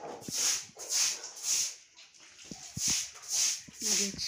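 A brush sweeping a wet concrete floor, in regular swishes about two a second.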